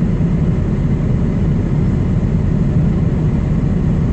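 Heavy diesel truck engine running steadily at low speed in slow traffic, a constant low rumble.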